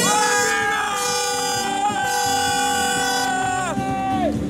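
A handheld air horn sounds one long, steady, multi-tone blast with a brief dip about halfway through. Its pitch sags as the blast dies away near the end, over background music.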